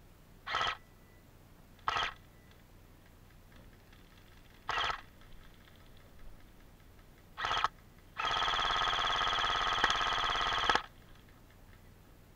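Airsoft electric rifle (AEG) firing: four short bursts a second or two apart, then one long burst of about two and a half seconds near the end, each a rapid rattling buzz of the gearbox cycling.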